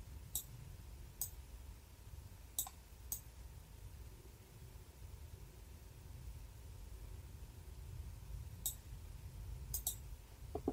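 Computer mouse clicking, about seven short faint clicks spread unevenly, two of them close together near the end, over a low steady background hum.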